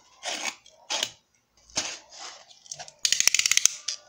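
A blade cutting into the taped cardboard of a mailer box: a few short scraping strokes, then a fast rasping run of cuts lasting under a second near the end.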